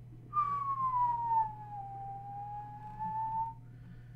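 A person whistling one long note that slides down in pitch and then levels off, lasting about three seconds, with some breath noise as it starts.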